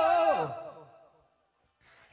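Isolated male heavy-metal vocal: a held sung note with vibrato slides steeply down in pitch and fades away in the first second. Near silence follows, then a short breath in near the end.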